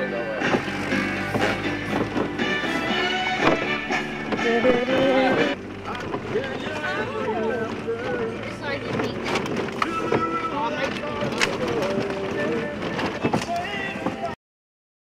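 Music with a sung voice, a little quieter after about five and a half seconds.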